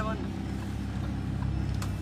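A Lamborghini's engine running at low speed, a steady low hum heard from inside the cabin.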